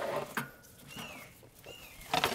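Faint handling sounds as a raw spatchcocked turkey is slid off a plastic cutting board onto a kamado grill's metal grate, with a light knock about half a second in.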